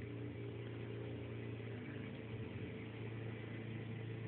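Room tone: a steady low hum with a faint hiss, unchanging throughout.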